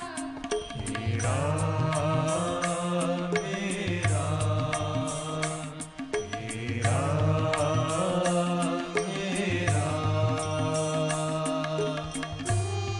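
A bhajan ensemble playing an instrumental passage: a harmonium and synthesizer melody in two swelling phrases over a steady tabla and octopad rhythm and a low bass line.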